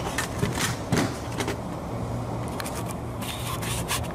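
Handling noise: scattered clicks, knocks and scrapes of a plastic drive housing and the handheld camera being moved about on a counter, the sharpest knock about a second in, over a steady low hum.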